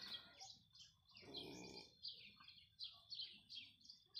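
Faint chirping of small birds: a scattered series of short, high, falling chirps. A brief soft low noise comes about a second in.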